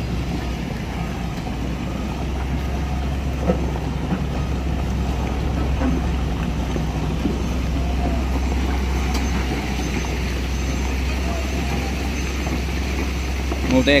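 Heavy diesel engine running steadily at an even speed, a deep unchanging drone without revving.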